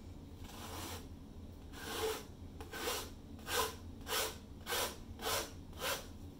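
A series of short rasping strokes, something rubbed repeatedly across a stretched canvas through wet acrylic paint. There are seven or eight strokes, falling into an even rhythm of about one every half second from about two seconds in.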